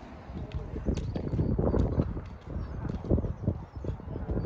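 Hoofbeats of a ridden horse moving around an arena: a rhythmic run of dull thuds on the soft surface.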